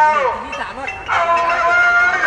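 A man's voice calling out: a phrase ends with a falling pitch, and after a short pause a long drawn-out syllable is held on one steady pitch.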